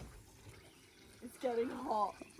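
Near quiet for about the first second, then a short wordless vocal sound from a person, its pitch sliding up and down like an exclamation.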